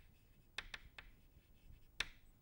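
Chalk writing on a chalkboard: faint taps and short scratches of the chalk stick, with a quick run of three strokes about half a second in.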